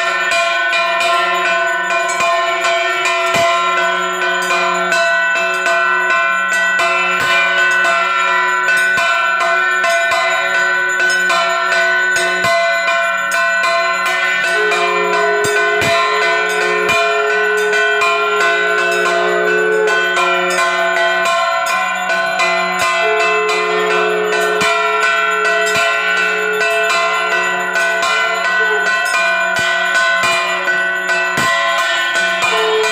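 Puja hand bell rung continuously during aarti, its repeated strikes blending into a steady ringing.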